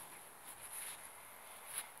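Faint outdoor background: a steady high-pitched hiss with a few soft rustles, including a brief one near the end.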